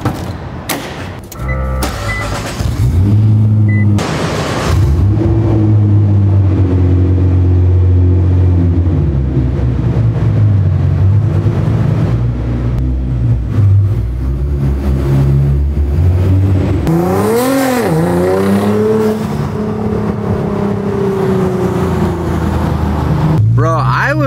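Nissan GT-R's twin-turbo V6 engine running in a parking garage, with one quick rev up and back down about 17 seconds in, then the engine note rising slowly over the last few seconds.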